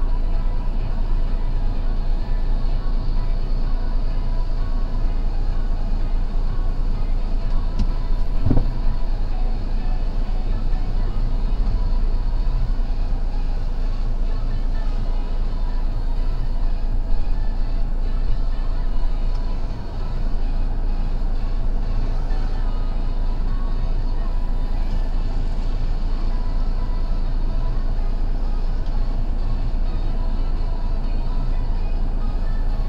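A stopped vehicle's engine idling, a steady low rumble heard from inside the cab, with a short rising sound about eight seconds in.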